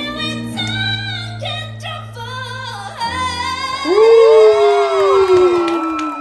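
A woman singing over sustained keyboard chords. About four seconds in she swoops up into a loud, long held note, sung full from the chest, that slowly falls in pitch.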